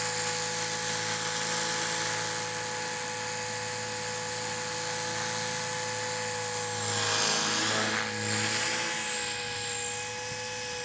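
A Blade 300X electric RC helicopter flying in idle-up: a steady high whine from its E-flite 320 brushless motor and drivetrain, with the rotor sound over it. Between about seven and eight and a half seconds in, the pitch dips and wavers and the sound briefly drops as the helicopter is thrown through manoeuvres.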